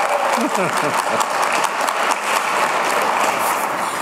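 Audience applauding steadily, a dense even clapping, with a few faint voices under it early on.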